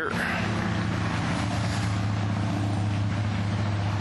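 A steady low mechanical hum from a running motor or engine, a few held low tones over a wash of noise, unchanging throughout.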